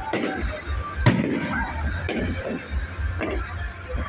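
Aerial fireworks bursting, three sharp bangs with the loudest about a second in, recorded on a phone microphone that makes them sound like gunshots.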